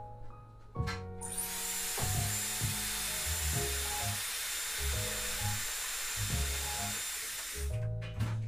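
Piano background music, joined a little over a second in by the loud, steady hissing blow of a hair dryer with a faint high whine, which spins up and cuts off just before the end.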